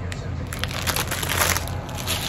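Plastic candy packaging crinkling and rustling as it is handled, in a run of crackly bursts starting about half a second in.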